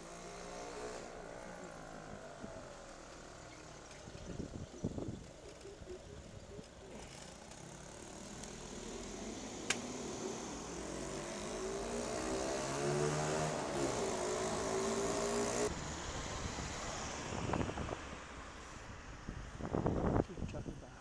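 Street traffic heard from a moving bicycle: a car's engine grows louder and bends in pitch as it passes close by, loudest past the middle, with a single sharp click near the middle and a few brief low rumbles.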